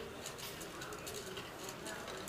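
A dove cooing in low, repeated notes, over faint voices and light clicking.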